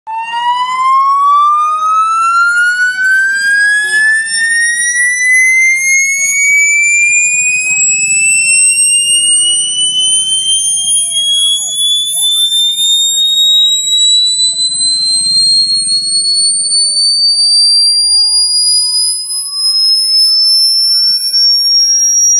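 A single loud electronic test tone played through a DJ truck's loudspeaker stack for a sound check, gliding slowly and steadily upward in pitch from low to high over about twenty seconds, with overtones sweeping up alongside it.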